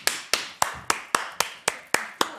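One person clapping hands in a steady rhythm, about four claps a second.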